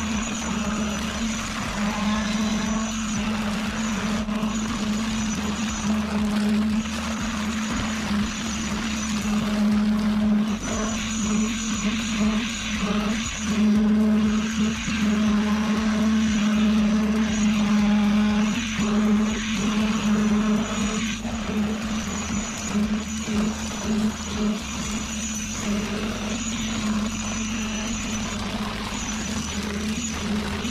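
Concrete pump running as wet concrete is pushed out of its boom hose onto a rebar-reinforced slab, with a concrete poker vibrator in use. A steady hum runs throughout.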